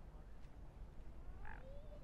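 A single short waterbird call about one and a half seconds in, with a brief sliding tone, over a low steady rumble.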